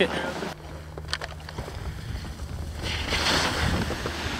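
Wind rumbling on the camera microphone, with a rush of hiss swelling about three seconds in.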